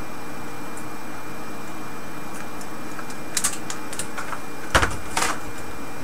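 A few sharp clicks and a knock as a test probe lead is unclipped from a signal generator and handled, bunched between about three and a half and five seconds in, over a steady background hum.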